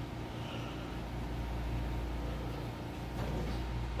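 Steady low mechanical hum of a running machine, with a faint even hiss above it.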